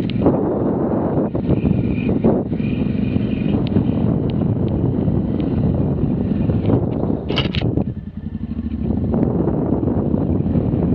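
Motorcycle riding along a rough dirt track: engine running steadily under wind noise, with scattered rattles and clicks from the bumps. A brief high squeak sounds about seven seconds in, and the engine eases off for about a second just after before picking up again.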